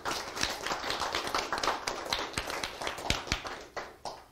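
A small audience applauding, a dense patter of hand claps that dies away near the end.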